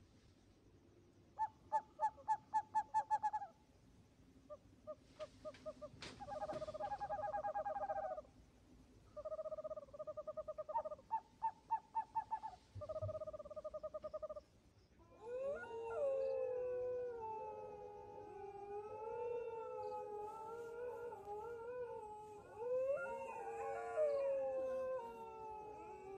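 A few groups of short, rapidly pulsed calls, then from about halfway through several overlapping howls that waver up and down in pitch.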